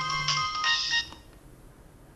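Mobile phone playing a melodic ringtone, a tune of clear electronic notes, which stops about a second in as the call is answered.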